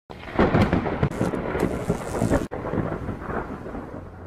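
Thunder with rain: a loud, crackling crash over the first half that cuts off abruptly, then a quieter rumble that fades away.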